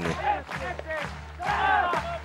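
Spectator crowd noise at a pesäpallo match under a brief word of commentary, with higher voices shouting from the stands in the last half second, over a steady low hum.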